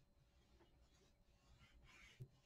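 Near silence: room tone, with faint soft paper rubbing near the end as a hand presses a paper album cover along its spine.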